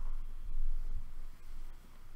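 Low room tone with a steady low hum from the microphone and a couple of faint soft thumps, about half a second and a second in.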